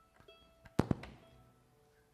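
A few plucked string notes from tuning between songs, then two sharp thumps close together a little under a second in, the knocks of an acoustic guitar being handled and shifted on its strap.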